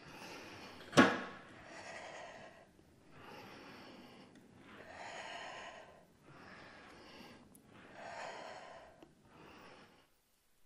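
A woman breathing audibly in and out with exertion while holding and moving through a pike-to-plank exercise on a Pilates reformer, one breath sound every second and a half or so. A single sharp click about a second in is the loudest sound.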